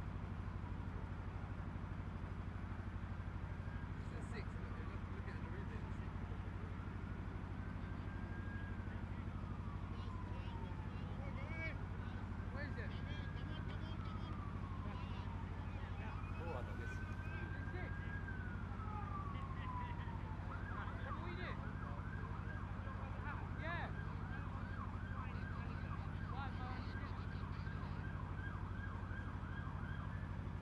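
A faint emergency vehicle siren sounds over a steady low hum. It gives about four slow wails, each rising and falling, then switches to a fast yelp about two-thirds of the way through.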